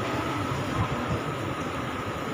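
Steady room noise of a crowded hall: a low rumble under an even hiss with a faint high hum, with no distinct event or single clear source.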